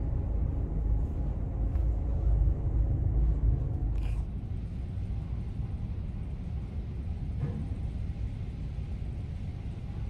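Low rumble inside the ferry MV Loch Seaforth under way in a storm, swelling for the first few seconds and then settling steadier. A single short click about four seconds in.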